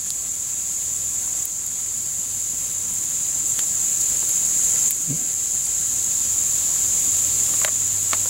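Steady high-pitched chorus of insects, cricket-like, with a few faint crackles from the campfire.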